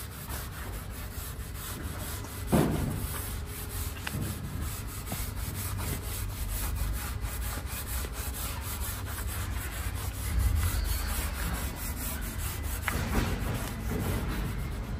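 A cloth-wrapped sponge pad wiping oil stain into a Japanese elm slab, rubbing back and forth over the bare wood, with a louder swish a couple of seconds in.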